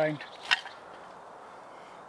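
A single short, sharp knock about half a second in, against a quiet woodland background.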